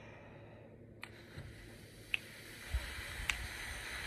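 A person inhaling briefly, then exhaling steadily through pursed lips for about four beats in a one-in, four-out breathing drill; the exhale grows slightly louder as it goes. Sharp soft ticks sound evenly about once a second throughout.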